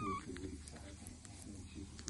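A young bottle-fed animal gives one short, high squeak at the very start, then makes small clicks as it suckles from a milk feeding bottle.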